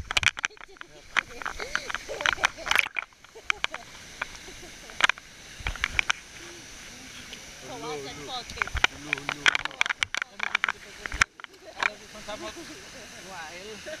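Water splashing and lapping against a waterproof action camera held at the water's surface, with many sharp splash crackles. Voices are heard briefly in the second half.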